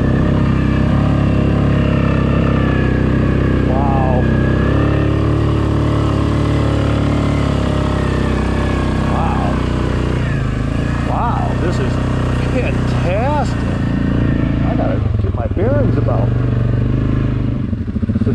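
ATV engine running steadily as the quad rides a wooded trail. The engine note shifts about three-quarters of the way through and dips briefly near the end.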